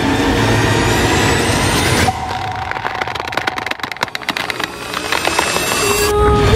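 Cinematic trailer sound design. A dense rumbling noise with a thin rising tone cuts off sharply about two seconds in. A rapid crackle of clicks follows and swells again toward the end.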